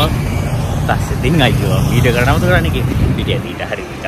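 Speech over a steady low background rumble.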